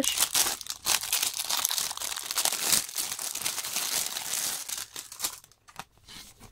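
Thin clear plastic wrapping crinkling and rustling as it is handled and pulled off a packaged wrist rest; the rustle dies down about five seconds in.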